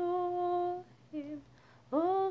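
A woman humming a tune without words: one long held note, then a short lower note and a brief pause before the next note rises in.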